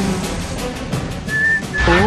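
A man whistling two short, steady high notes in the second half, over background music.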